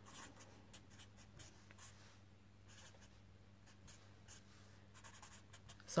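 Felt-tip marker writing on paper: a run of short, faint strokes, with a steady low hum underneath.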